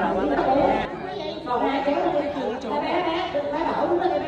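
Several people talking over one another in a large, echoing hall, with a laugh about a second in.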